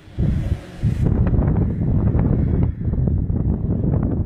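Rumbling wind and handling noise on a handheld phone microphone as it is carried, with a few irregular knocks mixed in.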